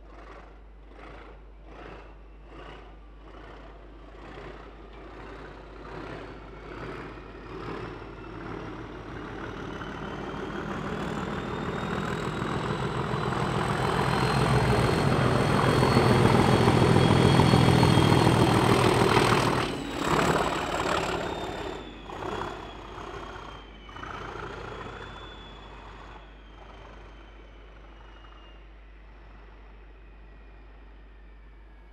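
A train passing through a station: rhythmic wheel clicks grow into a loud rumble with a high whine that rises and then falls in pitch. The sound drops sharply once the train has passed, and a few last wheel knocks follow as it fades away.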